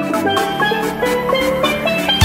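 Background music: a bright melodic line of short pitched notes stepping up and down over a steady beat.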